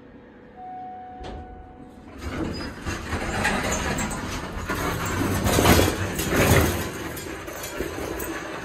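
Hydraulic elevator arriving: a faint steady hum, matching the B-flat pitch of its pump motor, cuts out as a single electronic arrival tone sounds with a click. From about two seconds the doors open and a shopping cart is pushed out of the cab, rattling, with louder clattering and background voices.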